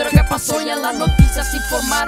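G-funk hip hop track with deep bass drum hits about a second apart under a vocal line and melodic synth lines.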